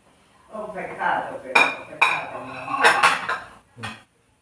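White ceramic dinner plates set down on a granite countertop: a short clatter with several sharp clinks, the loudest about one and a half, two and three seconds in, some with a brief ring.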